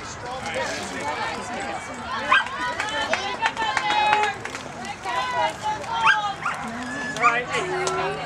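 Many overlapping voices of spectators and players calling out across a softball field, with several short, high-pitched rising shouts.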